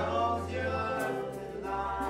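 Live acoustic band music: voices singing long held notes in harmony over a steady low note, with a light cymbal or percussion tap about a second in.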